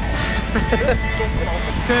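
Wind buffeting the microphone and rain hiss while walking on a wet road, with a man saying "okay" near the end.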